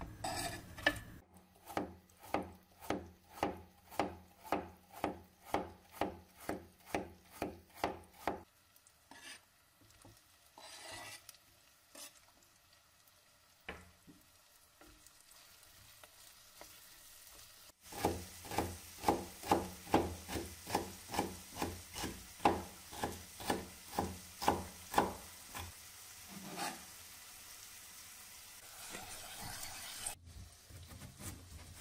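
Knife chopping vegetables on a wooden cutting board: two long runs of sharp, even cuts at about three a second. Between the runs is a quieter stretch with a few soft scrapes of a wooden spoon stirring vegetables in a terracotta pot.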